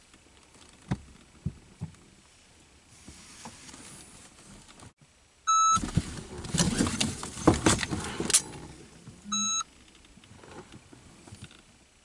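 Electronic shot timer giving a short start beep, then about three seconds of loud rustling and knocks as the shooter moves in the driver's seat to draw and present a Glock 19 pistol in a dry-fire drill, then a second identical beep about four seconds after the first.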